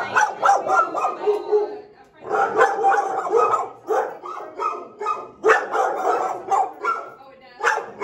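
Dog barking repeatedly in short barks that come in several bursts, with brief pauses between them.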